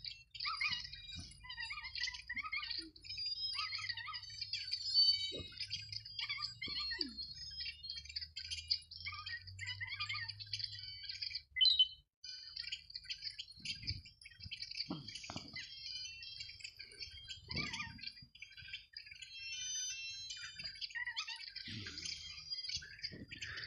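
Many small birds chirping and twittering continuously, with a brief sharp sound about twelve seconds in, followed by a moment's dropout.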